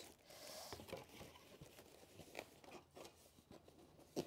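Faint rustling of paper packets being pushed into a box, with a few light clicks scattered through.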